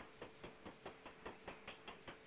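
Faint, evenly spaced ticking, about four or five clicks a second, over a faint steady hum.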